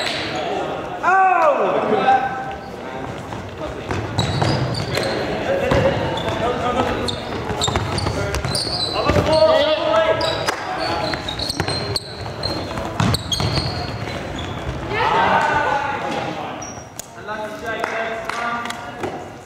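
Court noise of an indoor ultimate frisbee game in an echoing sports hall: players' shouts and calls, with trainers squeaking and footsteps on the wooden floor.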